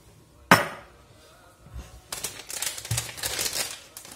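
A stainless-steel canister clanks sharply once as it is set down on a stone countertop, about half a second in. From about two seconds on, a packet crinkles and rustles as it is handled and opened.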